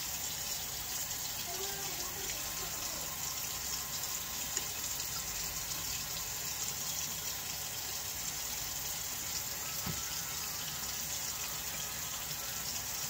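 Kitchen tap running steadily into a sink: an even, unbroken hiss of water.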